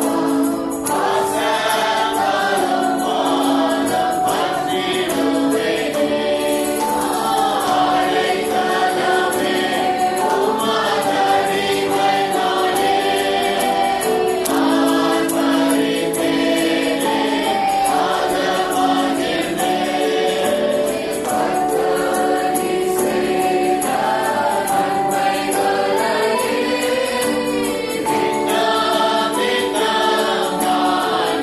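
A choir singing devotional music, with long held chords that change every second or two.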